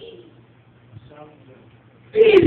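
A pause in speech: quiet room tone with a steady low hum, and about a second in a faint, brief hummed voice.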